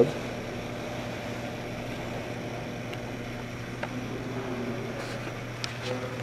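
Steady low hum with an even hiss: indoor room tone.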